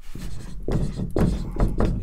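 Dry-erase marker writing on a whiteboard in a series of short strokes.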